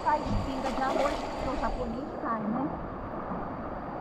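River water rushing steadily around a bamboo raft, with faint voices talking over it for the first couple of seconds.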